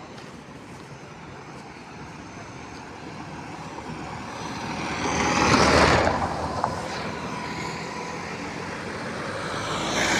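Highway traffic: a motor vehicle passes close by, its engine and tyre noise building to a loud peak about six seconds in and then fading, with another vehicle approaching near the end.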